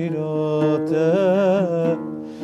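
Man singing a slow Kurdish song in a held, ornamented vocal line whose pitch wavers and bends, accompanied by an oud.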